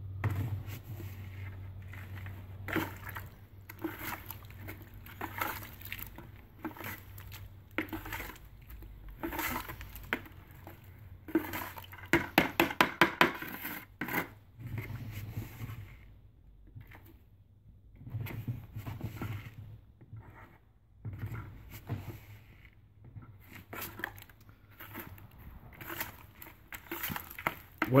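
A trowel scooping Portland cement powder out of one plastic bucket and scraping and stirring it into a watery latex slurry in another: irregular scrapes and knocks of the blade against the plastic buckets, with a quick run of strikes about halfway through.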